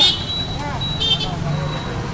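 Busy road traffic running past a roadside food stall: a low steady engine hum with faint voices in the background. Two short high-pitched sounds come through, one at the start and one about a second in.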